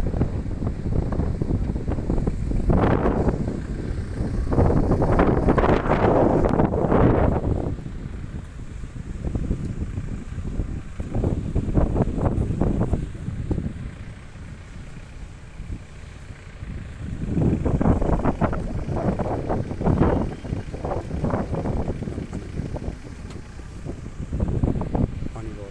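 Wind buffeting the microphone in strong, uneven gusts, loudest about a quarter of the way in and again past two-thirds, over the rush of a fast, silt-laden river.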